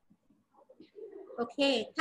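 Speech: a voice saying "okay", loudest near the end.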